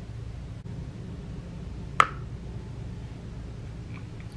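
Low steady room hum with a single short, sharp click about two seconds in.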